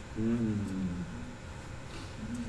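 A person's drawn-out voiced sound, like a hum or murmur without clear words, held for under a second and falling slightly in pitch.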